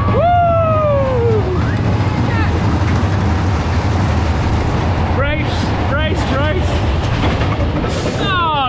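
Riders on a Wacky Worm (Caterpillar) family roller coaster whooping and shrieking as the train runs along its track. A long falling whoop opens the clip, followed by a few short high cries near the middle, over a steady low rumble of the ride and wind on the microphone.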